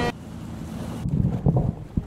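Low rumble of wind and open-sea water noise, with a brief thump near the end.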